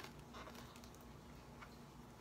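Near silence with a few faint scratches and ticks of fingernails picking at the cardboard door of a gift calendar box.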